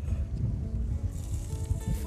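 Background music with held notes. About a second in, hot oil in a pan starts sizzling as the chopped leek for a kajgana goes in.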